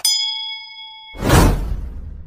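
Subscribe-button animation sound effects: a bright bell ding rings for about a second. A loud whoosh follows and fades away.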